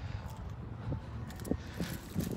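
Low rumble of wind on a handheld phone's microphone, with a few faint clicks in the second half.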